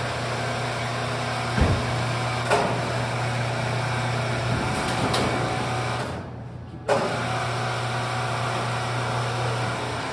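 Electric overhead hoist motor running with a steady hum while it lifts a heavy sap tank, with a few sharp clicks and knocks. About two-thirds of the way in, the motor stops for under a second, then starts again with a clunk.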